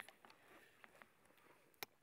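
Near silence, with a few faint ticks and one short, sharp click near the end.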